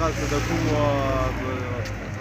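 A man's voice speaking over the low steady hum of a car engine on the road, the hum dropping away about one and a half seconds in.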